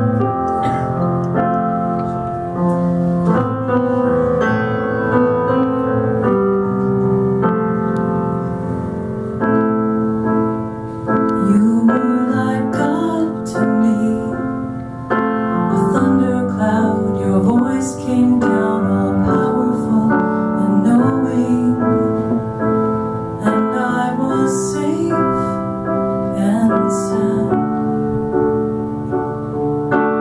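Nord Electro 3 stage keyboard playing slow piano chords as a song's introduction; about eleven seconds in, a woman's voice comes in singing over it.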